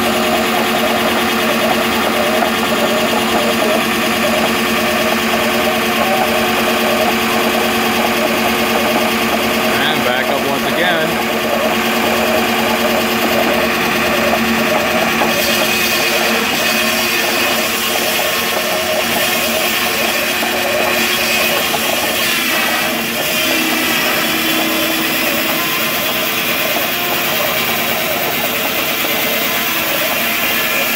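Belt-driven circular sawmill running: a steady hum and whine from the spinning saw blade and drive belts. It grows hissier about halfway through, and near the end the blade starts into the log.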